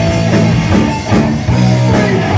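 Punk rock band playing live at full volume: distorted electric guitars and a drum kit, with a brief drop in level about a second in.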